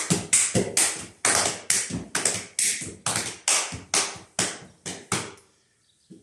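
Hand slaps on the legs and boots, claps and heel clicks of a Hungarian Roma men's slapping dance (bokázós csapássorozat): a quick run of sharp hits about three a second, stopping about five seconds in.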